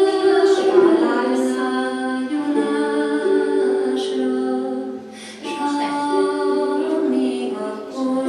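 A song sung by a woman and young children, in phrases of held notes, with a short pause about five seconds in.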